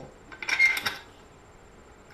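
Key turning in a handmade iron rim lock, throwing the bolt: a short cluster of metallic clicks and clacks with a brief ring, about half a second in.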